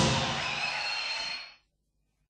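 The ringing tail of a loud thump, a noisy wash with a few faint tones, fading out and cut to dead silence about a second and a half in: the live recording fading out at the break.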